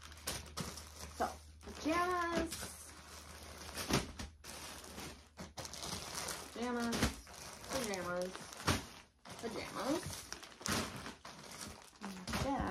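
Plastic packaging on pajama sets crinkling and rustling in quick, irregular bursts as the packs are handled and stuffed into a plastic bag. A few short, high voice sounds come in between.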